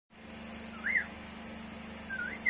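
Indian ringneck parakeet giving one short whistle about a second in, gliding up in pitch and then down, over a steady low hum.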